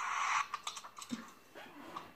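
A steady hiss that cuts off about half a second in, followed by a handful of faint, irregular clicks.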